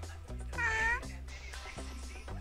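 Background music playing, and about half a second in a year-old baby gives one short, high-pitched squeal.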